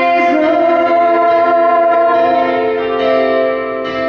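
A woman singing a slow ballad into a microphone over a backing track of sustained chords.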